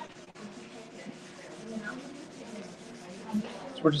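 A tissue rubbed over shaded drawing paper in quick repeated strokes, a steady dry scrubbing, blending and smoothing the shading into an even tone.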